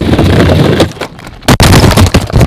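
Longboard wheels rumbling loudly over a bridge deck, then about one and a half seconds in a sharp crash as the rider is thrown off by a raised board and he and the camera hit the deck, followed by a burst of clattering and scraping.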